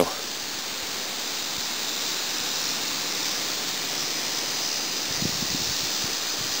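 Steady, even rushing of river water, with a few soft low thumps near the end.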